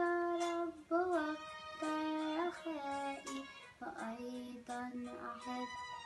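A young girl singing an Arabic hymn (tarnema), holding long notes; about four seconds in the melody drops lower.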